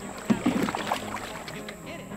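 Canoe paddling on a river: paddle strokes in the water with a sharp knock about a third of a second in. A voice is heard briefly in the first second.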